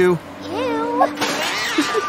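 A high, whining, wavering vocal cry, about a second and a half long, that rises and falls in pitch, like a comic whimper.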